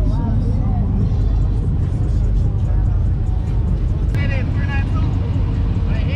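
Car engines running with a steady, deep low rumble.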